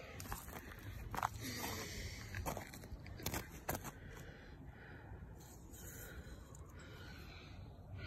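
Faint crunching of snow and light handling noises, with a few short sharp clicks in the first half, as a bottle rocket's stick is pushed into the snow to stand it upright.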